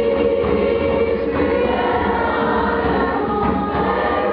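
Children's choir singing together, holding sustained notes that shift about every second or two.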